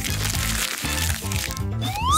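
Leaves of a potted plant rustling with a dense crackle that stops about a second and a half in, over background music with a bass line.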